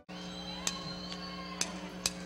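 Quiet live-stage sound between songs: a steady electrical hum from the band's amplification with a few faint clicks.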